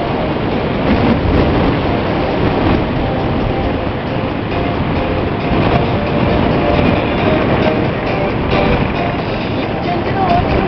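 Steady rush of wind and motorcycle running noise while riding, with music faintly audible under it.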